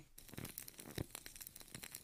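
Faint, irregular crackling and ticking, with one slightly stronger click about a second in.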